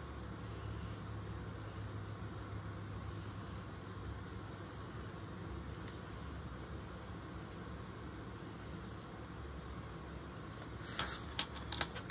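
Faint steady low hum of room background with no clear source of its own, and a few light handling clicks near the end as the plastic magnifier lens is moved and set down.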